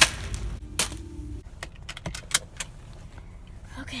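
About eight sharp clicks and light knocks, irregularly spaced, in the first two and a half seconds, then quieter.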